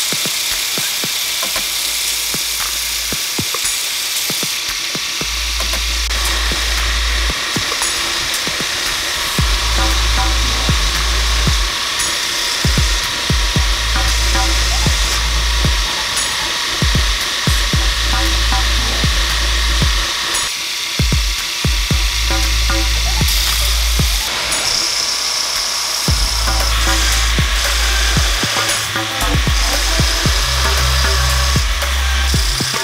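Forged steel bar being ground on a belt grinder's contact wheel, a steady abrasive hiss as the forging flash is taken off, under background music with a deep bass line that comes in about five seconds in.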